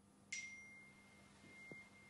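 Near silence, broken about a third of a second in by a faint click and then a single steady, high, pure ringing tone.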